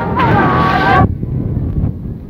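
Heavy surf and wind buffeting the phone's microphone, with voices shouting over it for about the first second; after that it drops to a lower rumble of sea and wind.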